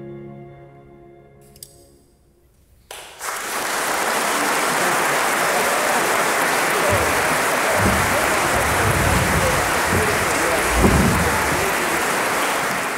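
A string quartet's last chord rings and fades away. After a brief hush, about three seconds in, the audience breaks into loud, sustained applause, with a few low thumps in the middle.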